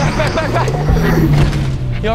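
Film soundtrack mix: score music layered with action sound effects, with a steady low hum through the second half.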